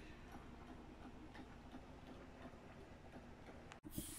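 Near silence: faint room tone with light ticking through it, broken by a brief dropout near the end.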